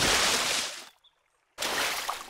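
Cartoon sound effect of a big splash into a duck pond: a loud rush of water that fades out within a second. After a short silence a second, weaker wash of water follows.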